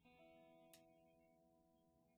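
A faint guitar chord struck once and left ringing, slowly fading away, with a small click about three quarters of a second in.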